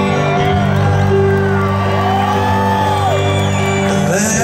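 A live band plays an instrumental passage of a song through an arena PA, with held chords and electric guitar, while the audience whoops and cheers.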